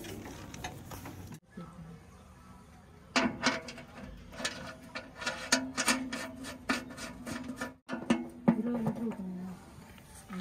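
Sharp metal clicks of a ratchet wrench working a drain plug on the underside of an excavator, coming in irregular runs from about three seconds in, over a low steady hum.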